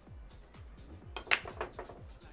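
A 10-ball break shot on a pool table: the cue ball smashes into the racked balls a little over a second in, a sharp crack followed by a quick scatter of ball-on-ball clicks. Background music with a steady beat runs underneath.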